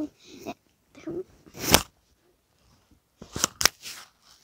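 Brief fragments of a voice, then short rustling knocks: one about halfway through and two close together near the end.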